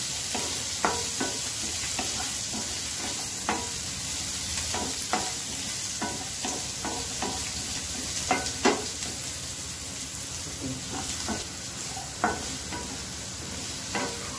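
Small onions and whole spices sizzling in oil in a kadai, stirred with a wooden spatula, with irregular scrapes and taps of the spatula against the pan over a steady frying hiss.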